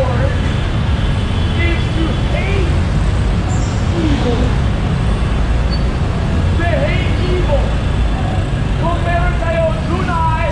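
Steady low rumble of heavy city street traffic, with scattered voices of people nearby.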